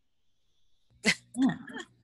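About a second of near silence, then a woman's short breathy vocal outburst followed by a spoken 'yeah'.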